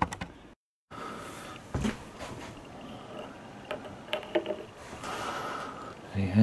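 Handling noise: a few scattered knocks and clicks as a coin and a magnifier are moved about on a tabletop, the loudest knock about two seconds in. The sound cuts out completely for a moment just under a second in.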